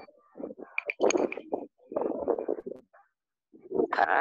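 A person's voice coming through a poor video-call connection, muffled and garbled past understanding, in two stretches of about a second each. It is typical of a participant's open microphone on a low-bandwidth link.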